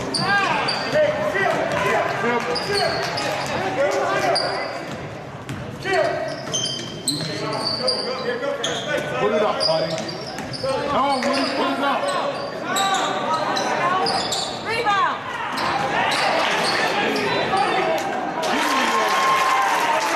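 Basketball dribbling on a hardwood gym floor during live play, with many short, high-pitched sneaker squeaks scattered throughout, in a large gym.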